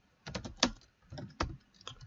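Computer keyboard being typed on: a quick, irregular run of key clicks as a line of HTML is entered.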